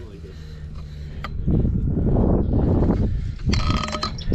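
Rustling and rubbing handling noise as a fish is worked free from an aluminium landing net. There is a single click about a second in, a rough rumble through the middle, and a short rasping sound near the end.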